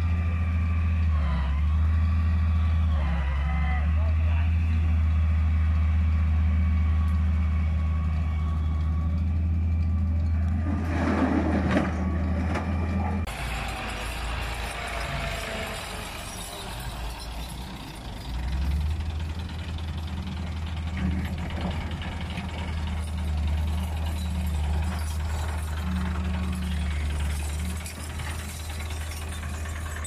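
Massey Ferguson tractor's diesel engine running loud and steady. About 13 seconds in the sound changes abruptly and the engine is weaker for several seconds, then comes back strong.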